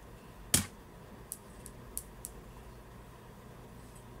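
Small objects being handled while a plastic hand mirror is picked up: one sharp knock about half a second in, then four light clicks over the next two seconds, over a low room hum.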